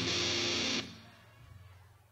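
Heavily distorted electric guitar chord ringing out through the amp, cut off sharply just under a second in. Afterwards only a low steady amplifier hum remains.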